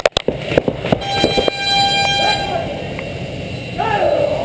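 A few sharp knocks and handling bumps on the camera, then one long horn blast lasting about a second and a half. Voices are heard around it.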